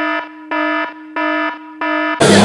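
Electronic alarm beeping, a comic sound effect: repeated buzzy tones of about a third of a second each, about three every two seconds, with a lower steady tone between them.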